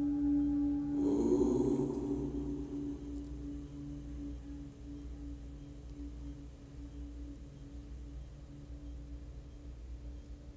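A meditation bell's single tone rings out and slowly fades with a slight pulsing: one of the three bells that signal the end of the final Shavasana rest. About a second in, a brief breathy rustle lasts about a second.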